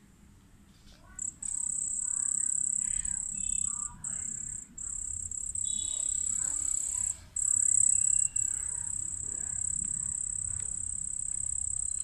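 A cricket trilling: a steady high-pitched buzz that starts about a second in and breaks off briefly a few times before running on.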